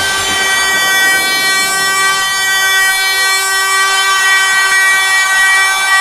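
Breakdown in a trance-hardcore dance track: the kick drum drops out and a single synth chord is held for about six seconds with no beat under it.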